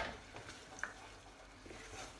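Risotto rice faintly sizzling and simmering in a pan just after a ladle of hot stock goes in, with a spoon stirring it. A knock at the very start and a light click a little under a second in.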